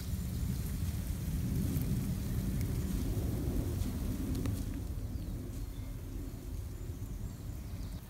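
Rustling and faint pattering of a dense swarm of Formica wood ants crawling over dry leaf litter and pine needles on their nest, under a steady low rumble.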